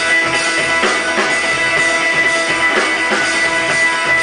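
Live rock band playing loud: electric guitars over a drum kit keeping a steady beat.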